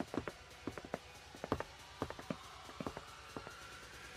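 Footsteps walking: a series of short, sharp steps at an uneven pace, a few per second, over faint background music.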